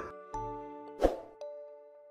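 Outro jingle sound effects: held musical tones with a single pop about a second in, growing quieter toward the end.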